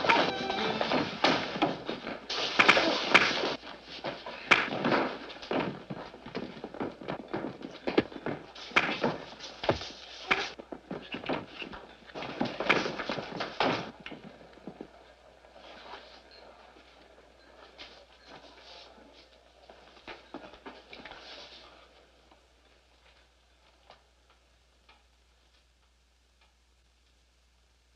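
A bar-room fistfight on an old film soundtrack: a loud flurry of thuds, knocks and crashes with music underneath for about fourteen seconds, then fainter, scattered knocks that die away.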